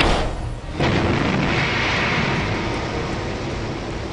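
Animation sound effects of the Mars Science Laboratory descent: a sudden bang as the backshell separates, then about a second in the descent stage's rocket thrusters fire in a sustained rushing noise that slowly fades, with music underneath.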